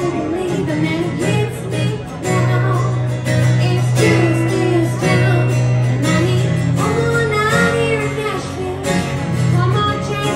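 A woman singing a country song live, accompanied by strummed acoustic guitars.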